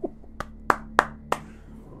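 A short run of sharp hand claps, about three a second, the later ones the loudest.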